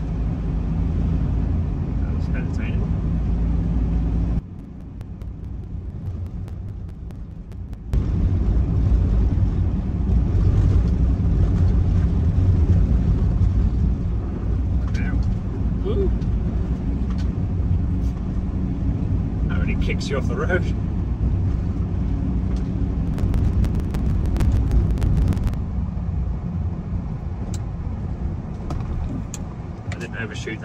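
Ford Transit campervan driving on a snowy road, heard from inside the cab: a steady low rumble of engine and tyres. It turns quieter for a few seconds near the start, then returns.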